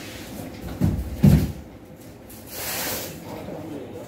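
Handling noise: two dull low thumps close together about a second in, then a brief rustle near three seconds.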